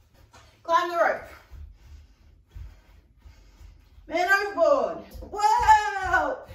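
A woman's voice calling out three drawn-out words, about a second in and twice near the end, with low dull thuds of feet landing on a wooden floor underneath.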